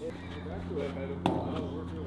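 A single sharp knock about a second in: the plastic wiffle ball striking after the pitch, under faint voices and a steady low hum.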